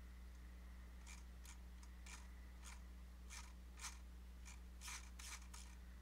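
Near silence with a low steady hum and about ten faint, irregular clicks of a computer mouse and its scroll wheel.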